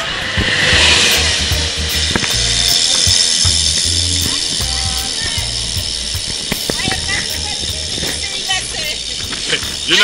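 Wind rushing over the microphone of a camera carried on a moving road bicycle, an uneven gusty low rumble over a steady hiss of air and road noise.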